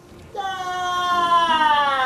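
A long, high wailing cry that starts about a third of a second in and slowly slides down in pitch, still sounding at the end.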